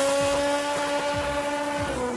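Car engine revved up and held at high, steady revs, easing off near the end.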